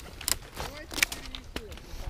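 Dry twigs and bare branches scraping and cracking as someone pushes through brush by hand, with a few short sharp snaps. Faint voices can be heard in the background.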